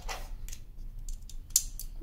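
Beyblade gear being handled: a few short plastic clicks and taps, one just after the start and a quick cluster near the end.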